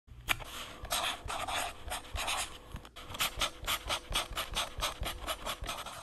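Pen or stylus scratching over a writing surface in quick, irregular strokes, several a second, as lettering and a drawing are put down.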